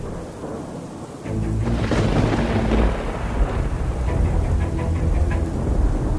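Thunder and rain over dark background music: about a second and a half in, a thunderclap breaks and rolls off into a long rumble, with rain continuing under the music.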